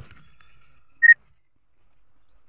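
A single short, high-pitched beep about a second in, one steady tone.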